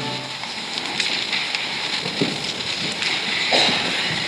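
Church congregation rustling and shuffling, a steady hiss of movement and handled paper with a few light knocks, just after an organ's held closing chord stops.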